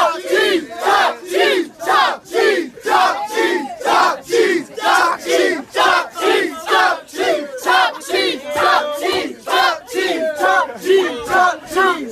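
A small group of men chanting "team" together in a loud, steady rhythm, about two shouts a second, turning ragged near the end.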